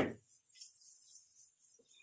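Hands rubbing a sheet of cardstock pressed onto a rubber background stamp: a faint, soft hiss of skin sliding over paper.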